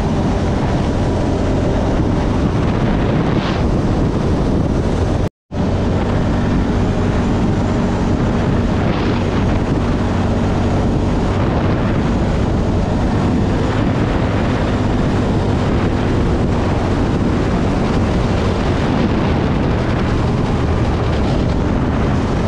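Quad bike engine running steadily at cruising speed, with wind noise on the microphone. The sound drops out to silence for a moment about five seconds in.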